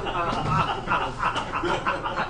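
A woman laughing into a close microphone in a choppy run of short, croaky pulses, breaking off her reading mid-sentence.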